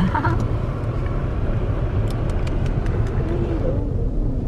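Car moving slowly, heard from inside the cabin: a steady low rumble of engine and tyre noise.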